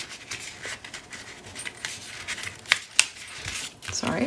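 Patterned paper strips sliding and rustling against black cardstock as hands position and press them down, with two sharp clicks a little under three seconds in.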